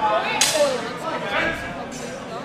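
One sharp crack of a longsword strike about half a second in, with shouted voices around it.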